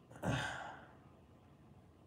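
A man's sigh close to the microphone: one breathy exhale about a quarter second in, fading away within about half a second.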